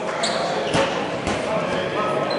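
Basketball dribbled on a hardwood gym floor: two bounces about half a second apart.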